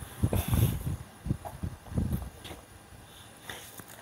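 Footsteps and camera-handling bumps: a few dull thumps in the first two seconds, then quieter.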